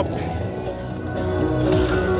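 Buffalo Link slot machine's bonus-round music during a free spin, a run of steady held electronic tones.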